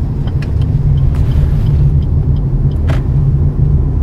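Steady low rumble of a car's engine and tyres heard from inside the cabin while driving, with a single faint click about three seconds in.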